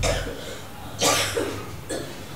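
Two harsh coughs, choked up by a foul smell: one at the start and a louder one about a second in.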